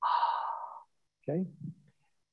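A man breathing out through his mouth in one audible, relaxed exhale lasting under a second, demonstrating a diaphragmatic breath after breathing in through the nose.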